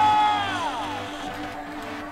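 A person's long excited yell, held and then sliding down in pitch and dying away about a second in, over background music.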